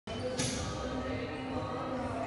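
Background chatter and general crowd noise echoing in a large sports hall, with no single event standing out.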